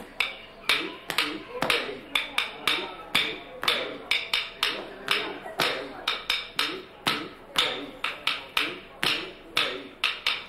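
Bharatanatyam class rhythm beaten with a wooden stick on a wooden block, about three sharp strikes a second in an uneven pattern, with a voice calling out the rhythm syllables between the strikes.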